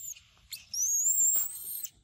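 A high, thin, whistle-like animal call: a brief squeak at the start, then a longer call from about half a second in that rises slightly over about a second and cuts off suddenly.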